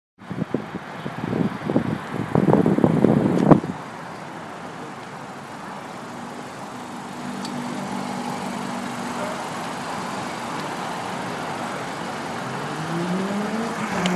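Car-park traffic noise: a steady hum of cars and a car engine, with a tone rising in pitch over the last second or so. A louder, irregular stretch of noise fills the first three or four seconds.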